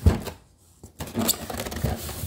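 A knock right at the start, then rubbing and scraping of the styrofoam packing insert and cardboard box as a hand grips the boxed embroidery machine to lift it out.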